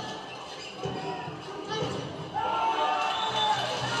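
Sound of a volleyball rally in a sports hall: crowd noise with a few ball hits. Music comes in about two and a half seconds in.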